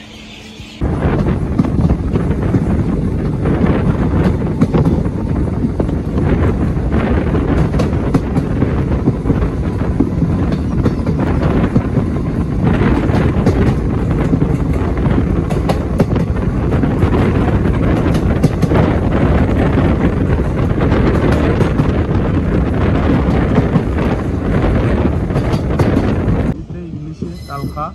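A moving passenger train heard from an open coach door: wheels clattering over the rails, with wind buffeting the microphone. It starts suddenly about a second in and runs on loud and steady.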